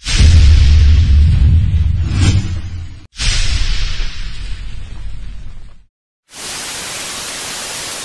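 Intro sound effects: a sudden impact with a low boom and a hissing tail that fades over about three seconds, then a second such hit about three seconds in. After a short gap, a steady burst of static noise near the end.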